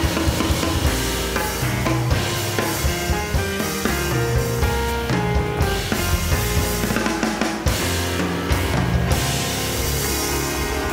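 Jazz piano trio playing live: a Steinway grand piano, an upright bass and a drum kit played with sticks, the drums prominent.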